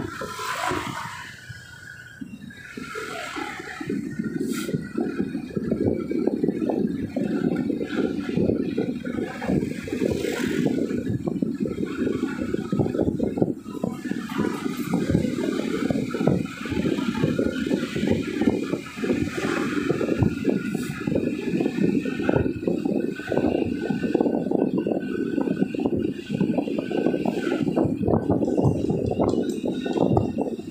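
Road and wind noise from a car driving along a street: a dense, uneven rumble that swells about three to four seconds in and then holds steady.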